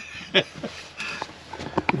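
A man's laughter tailing off into a few short, breathy bursts and sniffs.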